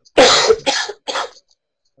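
A person coughing three times in quick succession, the first cough the longest and loudest, and all much louder than the surrounding speech.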